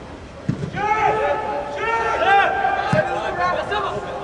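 Soccer players shouting calls to each other across an indoor turf pitch, with two dull thumps of the ball being kicked, one about half a second in and another near three seconds.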